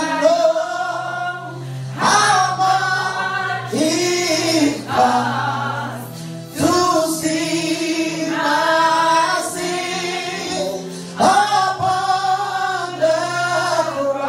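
Gospel worship song sung by a man into a handheld microphone, in long held phrases with short breaks between them.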